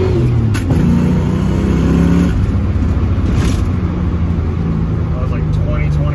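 1990 Ford Mustang engine under hard acceleration through its exhaust, heard from the cabin. The revs fall at the shift from first into second about half a second in, climb again, then drop about two seconds in as the throttle is eased, leaving a steady lower note while cruising.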